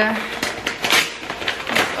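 Brown paper bag rustling and crinkling in quick, irregular bursts as it is handled and opened by hand.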